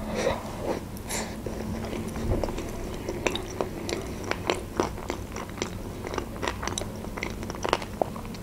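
A person chewing a mouthful of crab stick salad close to the microphone: many small, irregular wet clicks and smacks of the mouth.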